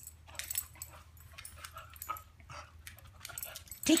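A dog whimpering softly in short, high whines, with scattered light clicks.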